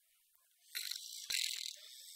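Recorded snoring sound effect played back over loudspeakers: an airy, hissing breath begins about two-thirds of a second in, after a short silence, and a second breath starts near the end.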